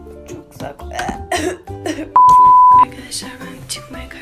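Background music, with a voice under it, and one loud, flat electronic beep lasting under a second about two seconds in, starting and stopping abruptly like a censor bleep laid over the soundtrack.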